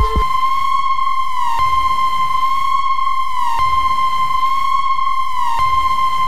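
Electronic background music: a held, high synthesizer tone repeating in phrases of about two seconds, each ending with a short downward pitch bend.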